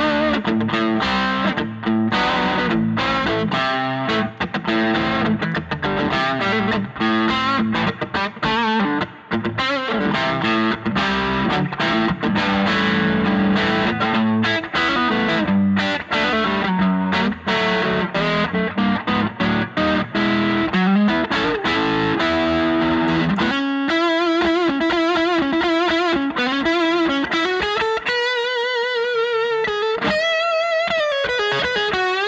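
Friedman Vintage T electric guitar on its neck P90 pickup, played through an overdriven amp: gritty riffs and chords. About 24 seconds in it changes to sustained single-note lead lines with wide vibrato and bends.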